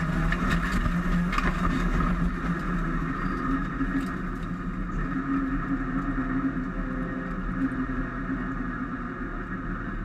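Lancia Delta Integrale rallycross car's engine heard from inside the cabin, pulling at fairly steady revs while racing, with scattered clicks and knocks over it.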